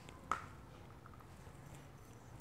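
A single light tap on a wooden tabletop about a third of a second in, as modelling clay and a metal tube cutter are handled, over a faint low steady hum.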